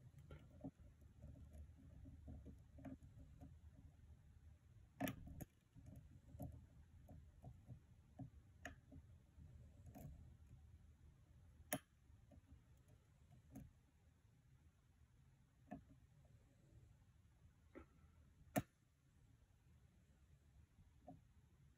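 Faint, irregular clicking of a hook pick working the pin tumblers of a challenge lock held under tension, with a few sharper clicks scattered through, the loudest near the end.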